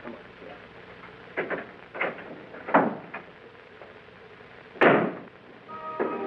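A few sharp knocks, then a louder thump about five seconds in: a door being shut.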